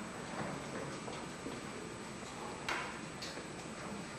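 Low room noise of a concert hall in the pause before a band piece, with a faint steady high whine and one sharp click or knock a little before three seconds in.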